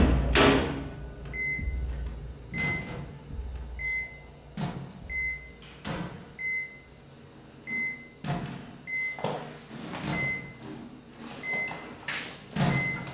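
Two loud thuds right at the start. Then a hospital patient monitor beeps steadily, one short high beep about every 1.3 seconds, with fainter scattered knocks and rustles.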